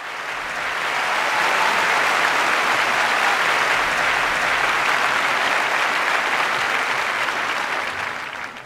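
Audience applauding as the song finishes. The applause builds over the first second or so, holds steady, then begins to fade near the end.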